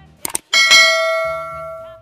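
Two quick clicks, then a notification-bell sound effect dings once about half a second in and rings out, fading slowly.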